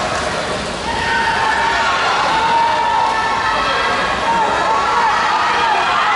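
Spectators in an indoor velodrome shouting to the riders: several voices hold long calls over a steady background of crowd noise.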